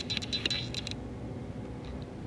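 Fingers rubbing and scraping along the wooden rocker of a rocking toy, a few faint scratchy clicks in the first second, then only low room noise.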